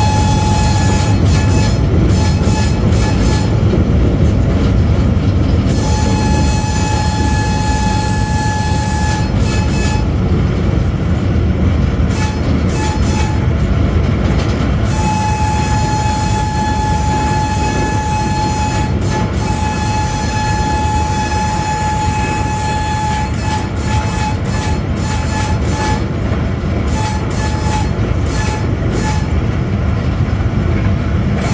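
Cab of an AGE-30 diesel-electric locomotive under way: a loud, steady rumble of engine and running gear, with a thin high tone that comes and goes several times.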